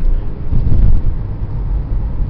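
Road and engine rumble heard inside the cabin of a moving 2002 Chevrolet Impala: a loud, steady low drone that swells loudest about half a second to a second in.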